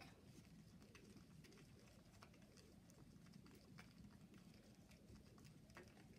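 Near silence, with faint scattered ticks and scraping of a wooden popsicle stick stirring soil paint on a paper plate.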